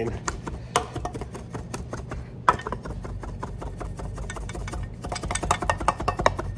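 A heavy, sharp cleaver mincing chicken liver fine on a wooden butcher block: rapid light chops of the blade on the wood. The chopping is dense at first, thins out in the middle and picks up again near the end.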